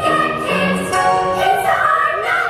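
Music with singing voices holding sustained melodic notes that change pitch every half second or so.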